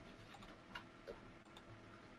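Near silence: faint room tone with a few soft, short ticks.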